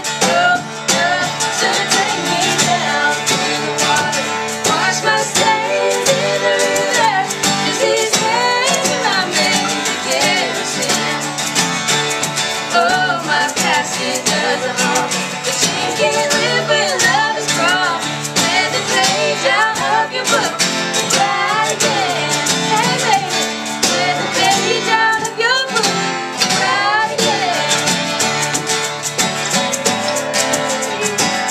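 Two acoustic guitars strummed together in a live country song, with voices singing over them.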